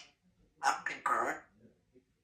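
African grey parrot making two short, noisy vocal sounds, the first about half a second in and the second just after a second.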